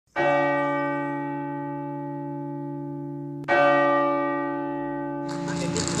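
A deep bell struck twice, about three seconds apart, each strike ringing out and slowly fading. Near the end a hiss of background noise comes in.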